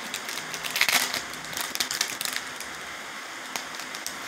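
Shiny plastic-foil wrapper of a Topps Chrome baseball card pack crinkling and crackling as it is torn open by hand, busiest in the first two seconds, then lighter rustling as the cards are pulled out.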